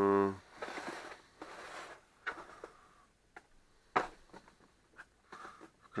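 Plastic accessory case being handled and opened: rustling, then several sharp plastic clicks as its hinged lids and compartments are worked, the loudest about four seconds in. A brief hum of voice at the very start.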